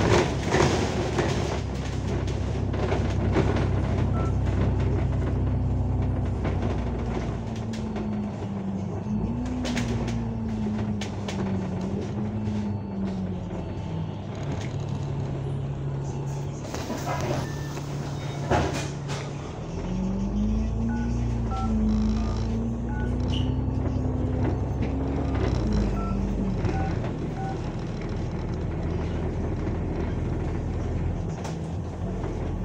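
Alexander Dennis Enviro500 MMC double-decker bus engine and transmission heard from inside the bus, a steady low drone whose pitch drops and wavers, sits low for a few seconds, then climbs and wavers again as the bus changes speed and gear. A couple of sharp knocks and rattles from the bus body come around the middle.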